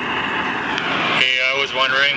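A recorded video clip playing through a phone's small speaker. It starts suddenly with a steady hiss of background noise, and a man's voice begins asking a question about a second in.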